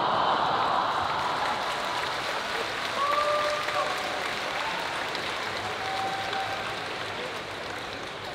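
Audience applauding and cheering in a large hall, loudest at the start and slowly dying away, with a few voices calling out over the clapping.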